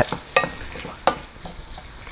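Diced shrimp and bay scallops sizzling in butter in a small cast-iron pan as they are stirred with a wooden spoon, with two sharp knocks of the spoon on the pan, about a third of a second and a second in.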